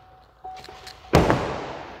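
A single loud thud about a second in, fading over most of a second: a pickup truck's cab door shutting. A few faint knocks come before it.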